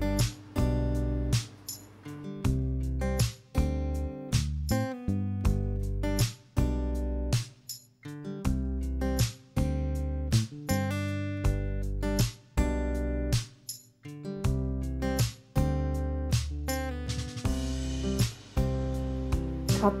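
Background music: acoustic guitar playing a plucked and strummed tune with a steady beat.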